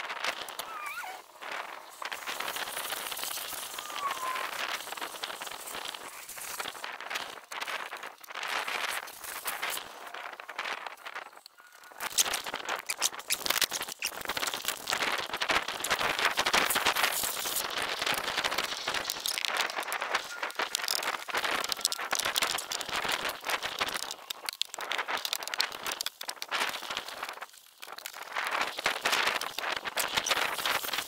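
Water from a garden hose spray gun jetting against a motorhome's bodywork: an uneven hiss of spray that rises and falls as the jet moves, and becomes louder after a sudden change about twelve seconds in.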